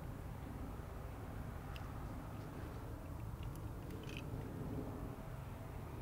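Faint, steady outdoor background noise with a few faint short ticks scattered through it.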